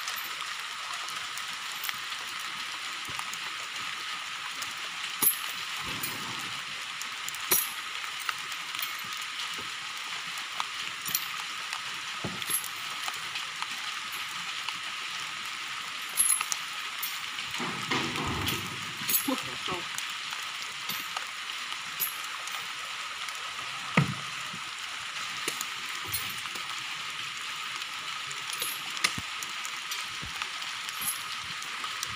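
Heavy rain hissing steadily, with scattered sharp knocks from oil palm fruit bunches being handled and thrown during hand loading of a truck.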